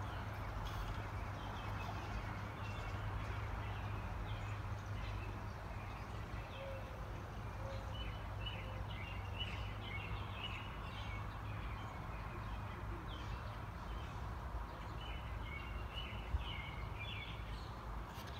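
Birds chirping in short repeated calls, thickest in the second half, over a steady low background hum.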